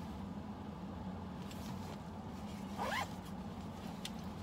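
Zipper on the inside pocket of a Coach signature-canvas handbag being worked open and shut, with a short rising zip about three seconds in.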